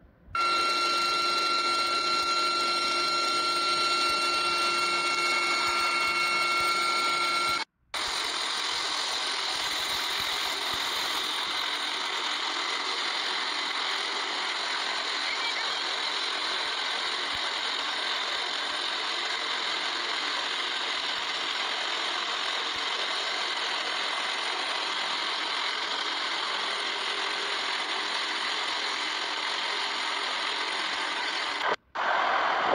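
Helicopter running: steady turbine whine tones over rotor noise. The sound cuts out briefly about eight seconds in and then continues as an even rotor-and-engine rush with one high steady whine.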